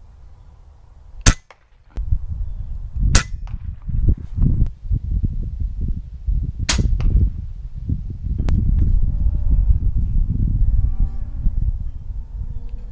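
Umarex Gauntlet .25-calibre PCP air rifle firing: a sharp crack about a second in, the loudest, then more shots around three and seven seconds and a fainter one after eight. A steady low rumble runs under them from about two seconds on.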